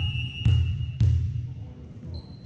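A volleyball bounced on a hardwood gym floor before a serve: two bounces about half a second apart, each with a deep boom that rings through the large hall.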